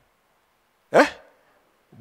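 A man's single short questioning exclamation, "Eh?", rising in pitch, spoken into a microphone about a second in; the rest is near silence.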